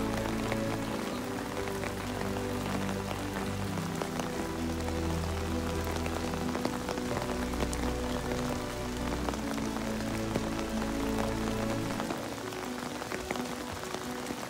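Steady rain falling, an even hiss with scattered drop ticks, under background music whose low sustained notes fade out about twelve seconds in.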